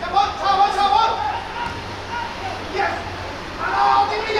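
Footballers shouting calls to each other on the pitch during an attack, with a loud shout near the end as the ball reaches the goalmouth.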